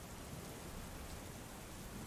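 Faint, steady rainfall, an even hiss with no single drops standing out.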